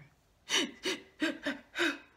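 A woman's short gasping sobs: five quick catches of breath about a third of a second apart, each with a brief falling pitch, acting out a child's crying.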